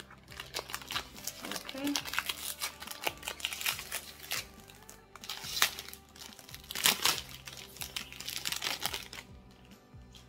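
Clear cellophane wrap being torn and peeled off a cardboard perfume box: a long run of crinkling crackles, loudest a little past the middle, dying away near the end.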